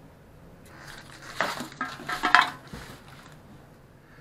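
Wooden strips and pieces being handled on a tabletop: a few short clattering knocks and rattles in the middle, two of them sharper.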